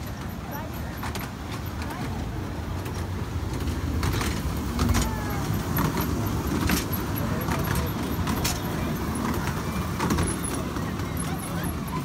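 Small amusement-park ride-on train running along its narrow track, heard from aboard: a steady low rumble with irregular sharp clacks from the wheels and carriages.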